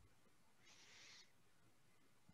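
Near silence: room tone, with a faint short hiss a little over half a second in.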